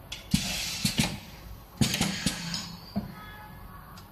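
Cylindrical screen printing machine running one print cycle on a small tube: two bursts of clacking and hissing from the moving print carriage, about a second and a half apart, then a short faint ringing.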